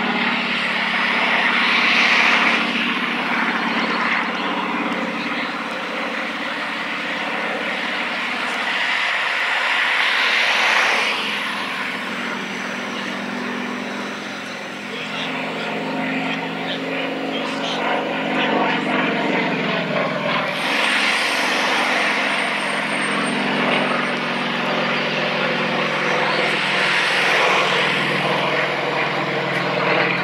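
Engine and propeller of a small aerobatic propeller plane, running at varying power through aerobatic manoeuvres. It grows louder and fades several times, swelling about two, ten, twenty and twenty-seven seconds in.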